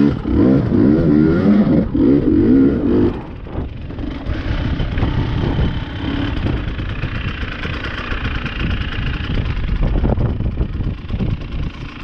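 KTM enduro motorcycle engine revving hard with rapid rises and falls in pitch as it powers up a steep rocky climb. About three seconds in it eases off to quieter, steady low running.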